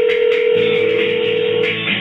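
A single steady telephone call tone sounds over the line and stops shortly before the end. About half a second in, music with a beat comes in under it and carries on.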